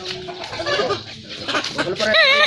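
Chicken making several short calls.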